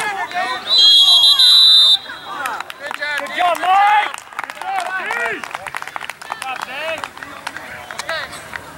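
A referee's whistle gives one long blast of about a second, signalling the play dead, followed by overlapping shouts and chatter from the crowd and players.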